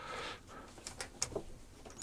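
A few faint clicks of fingers pressing the buttons on a Daewoo microwave's control panel, around the middle.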